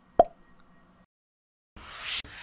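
Sound effects of an animated logo intro: a single sharp pop shortly after the start with a faint tail lasting about a second, then a moment of silence and a rising swoosh near the end.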